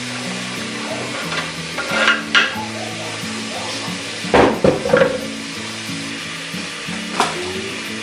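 Dried beef (carne seca) with onion, tomato and coriander sizzling as it fries in a pot on a gas stove, under background music. A few sharp clatters of utensils come about four, five and seven seconds in.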